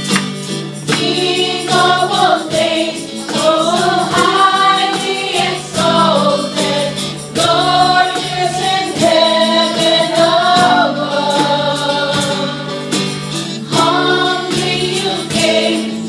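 A Christian worship song performed live by a small band. Several women sing together into microphones over acoustic guitars and keyboard, with a steady light percussion beat.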